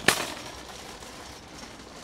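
A single sharp bang right at the start, with a short fading tail, followed by faint steady background noise.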